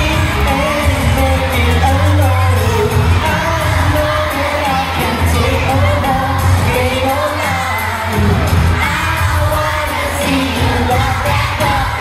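A pop song with a singer and a strong bass plays steadily, with the noise of a crowd of children under it.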